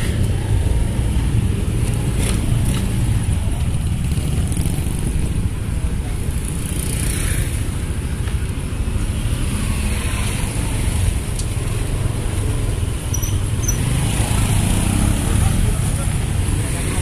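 Steady low rumble of a car driving slowly, its engine and tyre noise continuous, with a few faint clicks.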